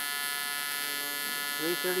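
AC TIG welding arc on aluminum plate, a steady buzz from an Everlast PowerPro 205Si inverter welder at about 170 amps. The machine is running near its maximum output.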